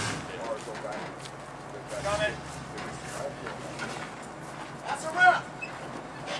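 Indistinct shouts and calls from a few people, the loudest about five seconds in, over a low steady rumble from the idling box truck's engine.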